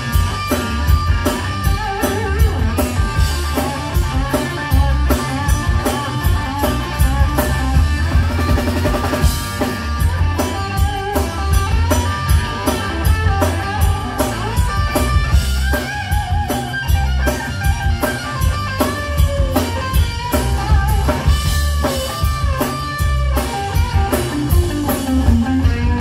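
A live rock band playing an instrumental passage: electric guitars, bass guitar and a drum kit keeping a steady beat.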